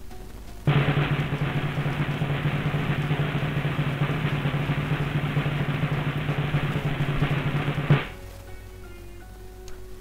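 A drum roll sound effect that starts abruptly, runs steadily for about seven seconds and ends on a final hit, over faint background music.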